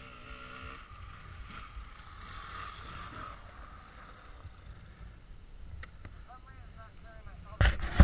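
A dirt bike riding away across an open slope, its engine faint and fading into the distance over a low rumble of wind. A sudden loud rush of noise comes near the end.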